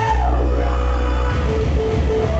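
Loud 8-bit chiptune breakcore dance music. A held bass note gives way, a little over a second in, to a fast chopped beat with short bleeping notes over it.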